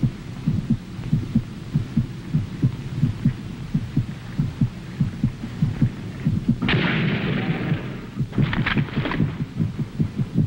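Amplified human heartbeat beating steadily and evenly, used as a sound effect. About two-thirds of the way through, a sudden rush of noise comes in, followed a second later by a few short sharp cracks.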